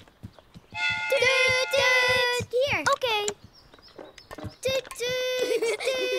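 Cartoon characters' voices making long held "toot" train-whistle calls, one about a second in and another near the end, over quick light footsteps.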